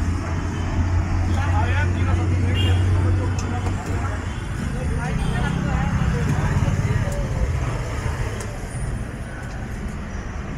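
Roadside traffic: a heavy vehicle's engine runs close by as a low drone, which moves up in pitch about halfway through, with people talking over it.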